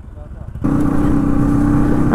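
Motorcycle riding noise, a low engine and road rumble. About half a second in, a loud, steady, held tone of unknown source joins it and carries on.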